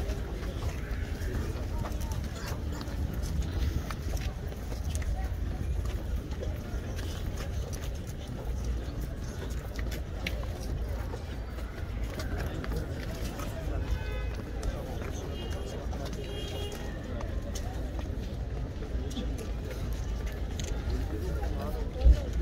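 Crowd of men murmuring and talking indistinctly while shuffling down stone steps, with scattered footfalls and a steady low rumble.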